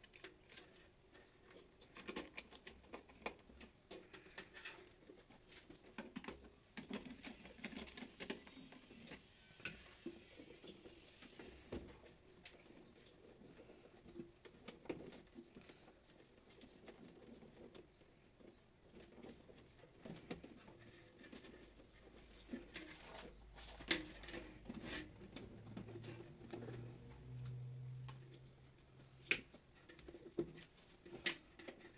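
Faint scattered clicks, ticks and rustles of stiff insulated wire being handled and pushed into panel terminals, with a screwdriver working terminal screws; one sharper click about three quarters of the way through. A faint low hum comes in near the end.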